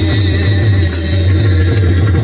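Pakhawaj (mridang) barrel drum playing a fast rhythm of deep bass strokes over a sustained drone, in an instrumental passage of devotional music without singing.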